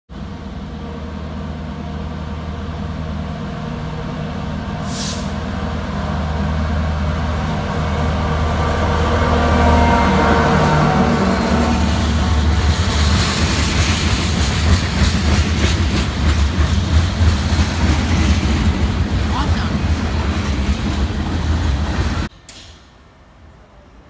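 Diesel freight locomotive approaching with its engine note growing steadily louder, then a string of covered hopper cars rolling past with steady wheel clatter and clicking over the rails. The sound cuts off suddenly near the end.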